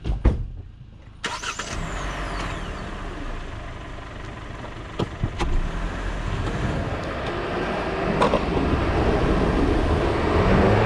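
A longboard set down onto asphalt with two sharp clacks, then, about a second later, the steady rolling noise of its wheels on coarse asphalt mixed with wind rush, growing gradually louder as it picks up speed downhill, with a few short clicks along the way.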